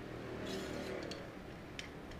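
Faint clicks and light handling noise from a battery sprayer's lance being handled.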